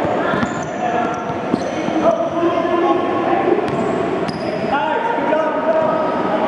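Basketballs bouncing on a gym court, with voices in the background and a few short high-pitched squeaks.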